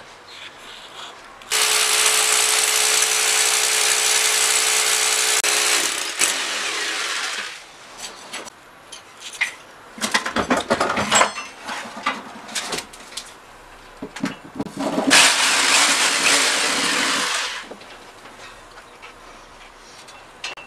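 Electric drill boring anchor holes into the wall for the air conditioner's outdoor-unit brackets: a long steady run of the motor with a held pitch, then a second shorter run later on. Briefer bursts of noise come in between.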